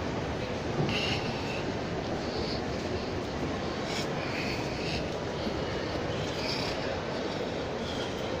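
Steady background noise of a shopping-mall concourse heard while walking: a constant rushing hum with faint higher sounds now and then.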